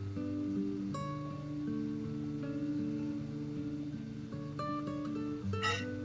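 Background music played on acoustic guitar, a run of plucked notes changing one after another.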